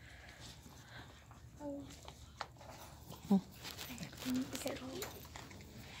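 Quiet room with a few soft murmured hesitations ("um", "hmm") and faint background chatter, and a single sharp click about two and a half seconds in.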